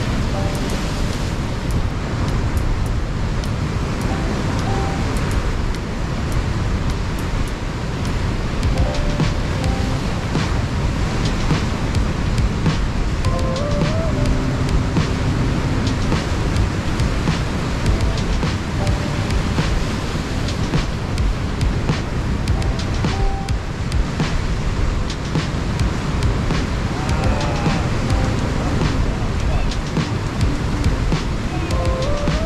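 Wind rushing over the microphone and heavy surf breaking on a rocky shore, a steady loud rush throughout, with faint background music underneath.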